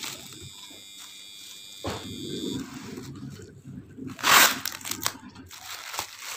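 Plastic bubble wrap crinkling and rustling as hands handle and unwrap a package, with one loud, short burst of rustling a little past the middle.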